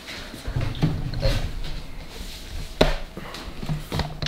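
Kitchen movement noises: shuffling, rustling and several knocks, with one sharp knock just before three seconds in.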